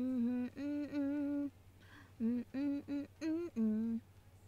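A person humming a tune with closed lips, unaccompanied: a long held note that breaks into a short phrase, a pause of about a second, then a string of short clipped notes.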